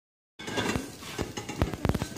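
A few irregular sharp clicks and knocks from a wooden hand-cranked corn sheller as a corn cob is handled at it. The clearest knocks come near the end.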